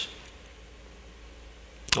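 A pause between a man's spoken sentences. Steady room tone with a low hum fills it, his voice trails off at the very start and comes back just before the end.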